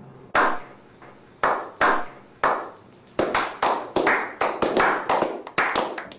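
Hand claps from a small group of men: a few single, spaced claps at first, quickening about three seconds in into steady clapping at about four or five claps a second.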